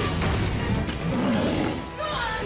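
A monster's roar sound effect over dramatic music, from a TV car commercial.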